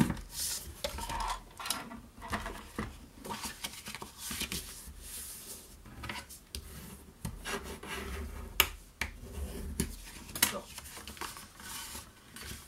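Red cardstock being scored on a Stampin' Up paper trimmer, the scoring head sliding along its rail, then the card folded and creased by hand: a run of scrapes and rubs, with a few sharp clicks in the second half.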